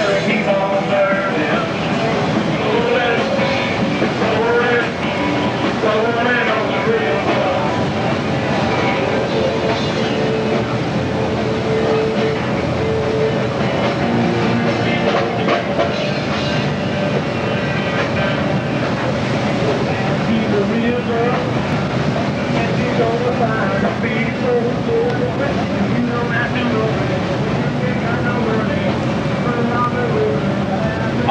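Steady rushing noise of wind and churning sea alongside a ship under way, loud on the microphone, with faint voices and music under it.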